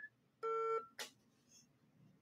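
A single electronic beep, a steady tone about half a second long, followed by a short click, on a phone-in line that is having trouble connecting.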